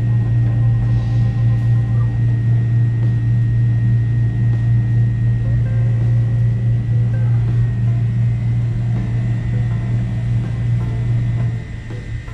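Loud, steady low machine hum, with a faint high whine above it, that drops away near the end.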